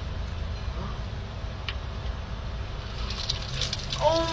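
Steady low rumble of a car engine idling, with a short hissing splash near the end as an iced drink is poured out.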